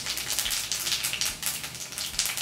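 Cumin seeds sizzling and crackling in hot oil in a steel kadai, a dense, continuous run of small pops as they temper.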